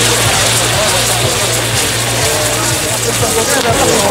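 Maltese ground-firework wheel spinning, driven by burning fountain charges: a loud, continuous hissing rush of pyrotechnic fire, with crowd voices underneath.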